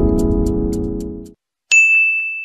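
Background music ending on a held chord that fades out, then near the end a single bright, ringing ding: a notification-bell sound effect.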